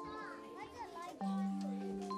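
Young children's voices chattering faintly over soft background music of long held notes.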